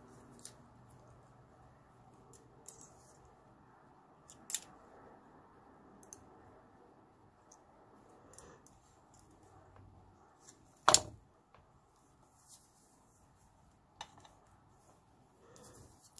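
Sparse light clicks and taps of steel pliers handling and bending copper wire, with one much sharper click about eleven seconds in.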